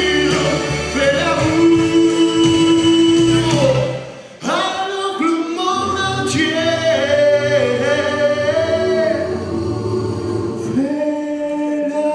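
A male singer's amplified voice holds long sustained notes over a recorded backing track. The sound drops out briefly about four seconds in, then the voice and accompaniment resume.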